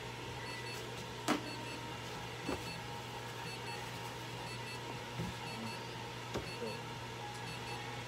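Steady electrical hum and a faint high tone from running equipment, with faint short electronic beeps repeating about once a second. A few soft clicks, the sharpest a little over a second in.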